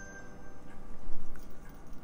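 Ornamental Christmas bells being handled as they are hung on a tinsel wreath: a faint ring from the bells fades out in the first half second, followed by a few light clicks of handling.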